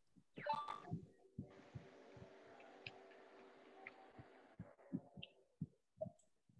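Near silence from an open microphone on a video call: a faint steady hum with scattered soft low thumps.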